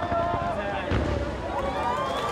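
Fireworks going off over the voices of a crowd of onlookers, with a low boom about a second in.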